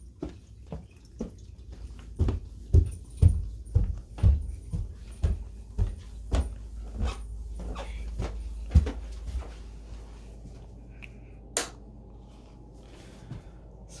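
Footsteps walking at about two steps a second, each a dull thud with some handling rumble, stopping after about nine seconds; a single sharp click follows a couple of seconds later.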